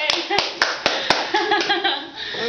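A few sharp hand claps, irregularly spaced, over the first second or so, followed by voices talking.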